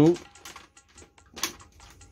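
A run of light, quick clicks with a sharper tap about one and a half seconds in, from handling a digital multimeter and its test probes.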